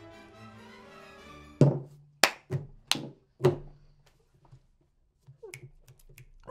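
Faint background music, then five sharp knocks in quick succession over about two seconds, like drinking glasses set down hard on a tabletop after a shot; a few small clicks follow near the end.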